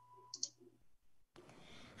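Near silence with a faint electrical hum, broken by a short, sharp click about half a second in; a faint hiss of room noise comes in near the end.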